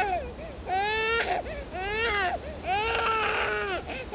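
Infant crying in repeated wails, about one a second, each rising and then falling in pitch.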